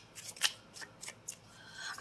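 A deck of tarot cards being shuffled by hand, overhand: several short, sharp card flicks and slaps with quiet between them.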